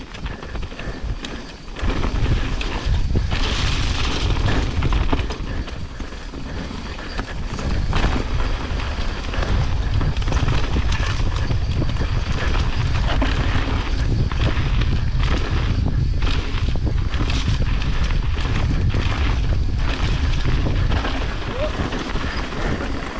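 Wind buffeting an action camera's microphone as a mountain bike rolls down a dirt singletrack, with tyre noise and the bike clattering over roots and rocks. The rumble grows louder about two seconds in.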